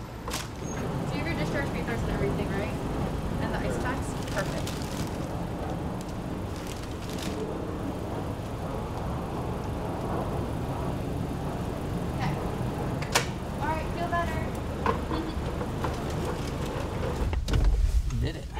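Steady rumble of idling cars and traffic, with indistinct voices now and then. A sharp click comes about thirteen seconds in and a low thump near the end.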